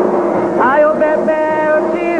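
A voice singing a slow ritual chant, with long held notes and slides in pitch between them.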